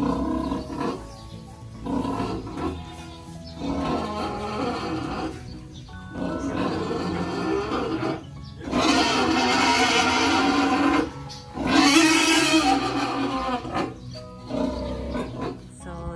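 A large sow squealing while she is held for blood sampling: a run of loud, harsh screams of one to two seconds each, with short breaks between. The longest and loudest comes about nine seconds in.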